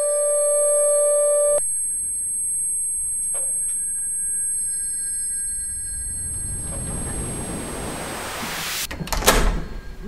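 Radio-drama sound design: a held, ringing tone that cuts off suddenly about one and a half seconds in. A hissing swell then builds over a few seconds and ends in a few sharp, loud hits near the end.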